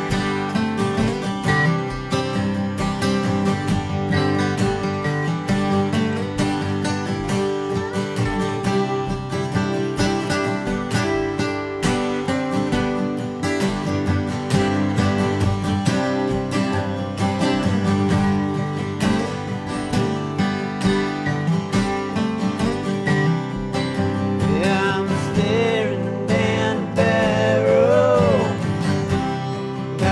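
Two acoustic guitars playing an instrumental passage together, one strumming chords while the other picks a lead line. Wavering, bending notes stand out from about 24 seconds in.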